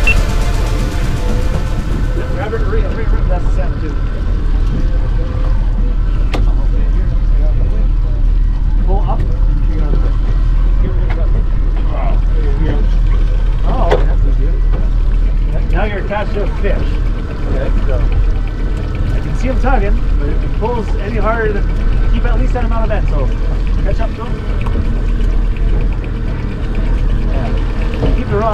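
Boat motor running with a steady low rumble under the sound of the hull on the water.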